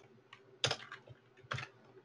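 Computer keyboard keys pressed a few separate times: a faint click, then two louder clicks about a second apart.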